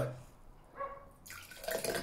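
Thick liquefied oatmeal being poured from one glass into a glass tumbler, a faint splashing pour that starts about a second and a half in and grows louder toward the end.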